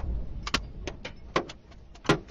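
Low rumble of a missile explosion dying away, with about four sharp knocks of falling debris striking around the car, roughly every half second.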